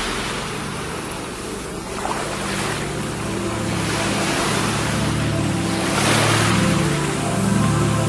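Slow ambient music of sustained low tones, with ocean surf layered over it, the wash of waves swelling and fading every few seconds.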